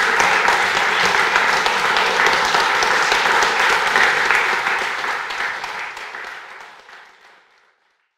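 Audience applauding, a dense steady clapping that fades away over the last three seconds.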